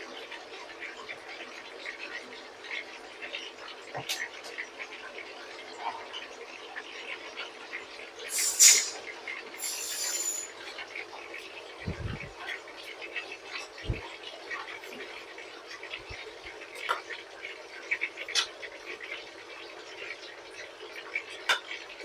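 A metal ladle stirring a stainless-steel pot of sour soup, with scattered sharp clicks of the ladle against the pot over a steady hum from the induction cooktop. Two short loud hisses come near the middle.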